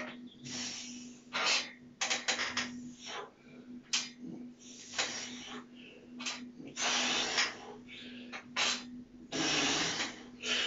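Hard, hissing breaths of a man doing chin-ups, pushed out in irregular short bursts of about half a second as he pulls.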